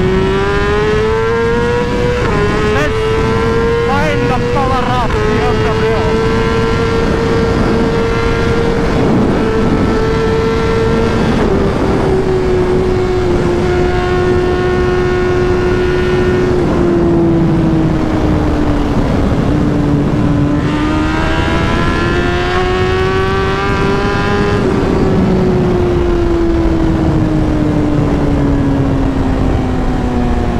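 BMW S1000RR inline-four engine at speed, heard from the rider's seat over continuous wind rush. The revs climb through the first couple of seconds with a quick upshift, hold high, ease off slowly, climb again about twenty seconds in, then fall away toward the end.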